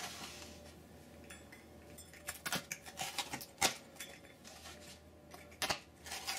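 Rolling pizza cutter slicing through a thin, baked frozen-pizza crust on a wooden pizza peel: quiet, with scattered sharp clicks from about two seconds in.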